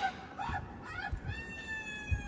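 A few short voice sounds, then from about halfway through a voice holding one high, slightly falling note.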